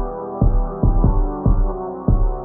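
Instrumental hyperpop beat: punchy kick drums in a bouncy pattern, about two to three a second, over deep sustained sub-bass and held synth chords. The whole mix sounds muffled, with its high end cut away.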